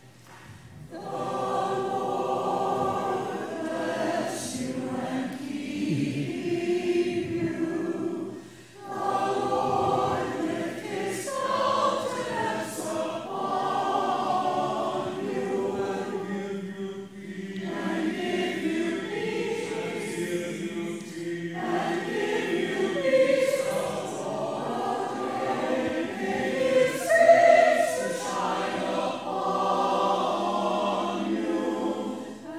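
A choir singing a slow sung response, phrase by phrase, with brief pauses for breath about nine and seventeen seconds in.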